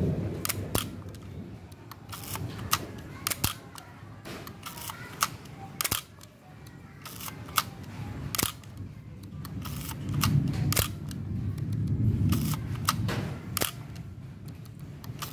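Nikon FE2 35 mm SLR body with no lens fitted, its shutter and mirror fired over and over: about a dozen sharp click-clacks at uneven spacing, with the lever wound between releases. A low rumble of handling noise from about ten seconds in.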